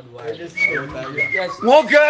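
A man's voice singing with sliding, bending notes, with two short high steady notes partway through and a louder rising note near the end.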